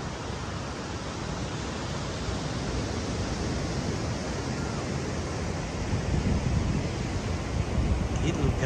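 Steady rush of ocean surf on a sandy beach, with wind buffeting the microphone; the low rumble gets louder in the last couple of seconds.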